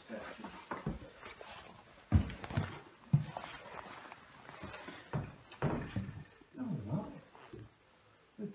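Footsteps on old wooden stairs: a few separate knocks and thuds spread through, with a short wavering pitched sound, like a creak or groan, about three-quarters of the way through.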